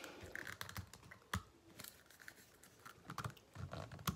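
Faint clicks and rubbing of hands gripping a round biodegradable muscle-rub container and trying to twist its lid off without success, with one sharper click about a second and a half in.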